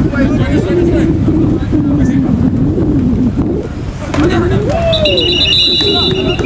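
Voices calling out over open-air game noise, then a referee's whistle blown for about a second near the end, a steady high shrill with a slight trill, signalling the play dead after the tackle.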